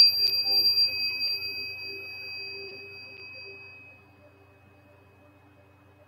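A small struck metal chime ringing out, a bright high tone fading away over about four seconds, used to clear the air of energy.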